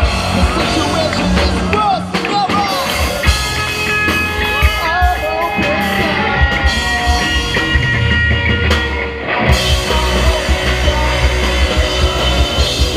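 Live rock band playing through a PA: a singer over electric guitars, bass and drums. The guitars hold sustained chords through the middle, and around nine and a half seconds the full band crashes back in with heavy drums and bass.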